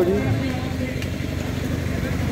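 A steady low engine rumble with a faint hum running under it, after a single spoken word at the start.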